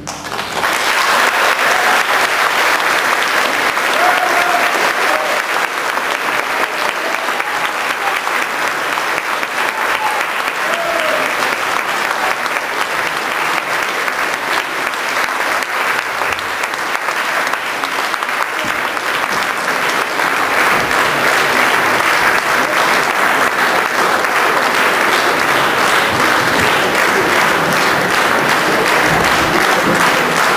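Audience in a concert hall applauding steadily and densely, starting as the orchestra's final chord dies away.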